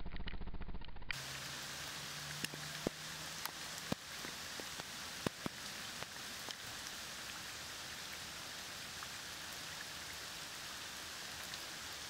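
Steady rain falling on open creek water: an even hiss with scattered sharper drip ticks, starting abruptly about a second in.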